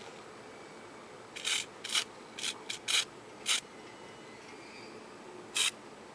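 Short hissing puffs from an aerosol can of Can Do silver spray paint, about eight quick bursts, most between one and four seconds in and one more near the end, laying a silver base coat on a small plastic part.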